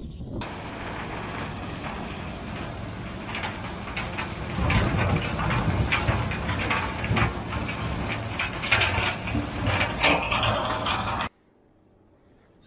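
Tractor-driven bale processor shredding a cornstalk bale and blowing it out as bedding: a steady engine-and-rotor drone with crackling of stalks. It grows louder about halfway through and cuts off suddenly near the end.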